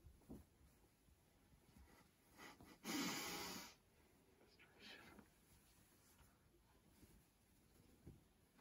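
Quiet room with faint handling of a large fitted sheet, and one short, loud breath about three seconds in.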